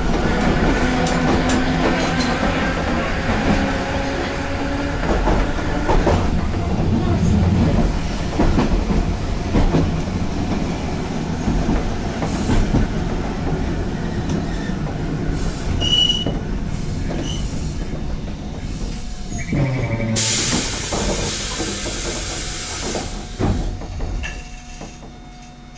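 Keifuku Electric Railroad Mobo 621-type tram car running on its track, wheels rolling and clattering under the cab, heard from inside the rear cab. About twenty seconds in, a loud steady hiss sets in and runs for a few seconds as the tram nears a station platform.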